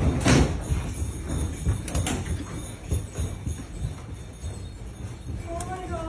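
A building shaking in a magnitude 6.7 earthquake: a heavy low rumble with rattling and clattering of loose fittings and glass, loudest about a third of a second in, then easing off.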